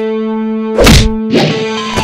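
Film fight-scene soundtrack: a steady, held musical tone broken by a loud punch-like hit effect just under a second in, then a second, weaker hit shortly after.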